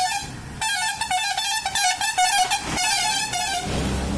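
A vehicle horn sounds almost without a break for about three seconds, starting about half a second in. Near the end it gives way to the low rumble of a vehicle passing close by.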